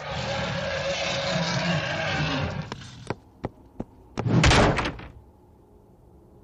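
Cartoon sound effects: a loud rumbling noise for the first two and a half seconds, then a few light clicks, then a heavy door bang about four and a half seconds in.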